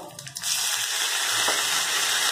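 Chopped green capsicum dropping into hot tempering oil in a steel kadai, setting off a loud, steady sizzle about half a second in.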